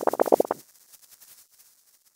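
Short cartoon-style sound effect for an animated title card: a loud, rapid fluttering run of pulses lasting about half a second, trailing off into a faint rattle.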